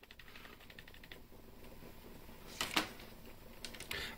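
Plastic buttons and D-pad of a USB gamepad clicking as they are pressed: a quick run of faint clicks in the first second, two louder clicks near the middle, and a few more near the end.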